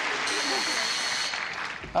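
Studio audience applause dying away, with the game-show buzzer sounding once for about a second near the start. It was set off by mistake, not for a broken rule: "there was nothing wrong".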